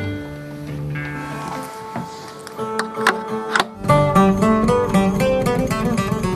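Bouzouki and other plucked strings playing: a slow line of held notes with a few sharp plucks, then about four seconds in a fuller, faster strummed accompaniment with low bass notes joins.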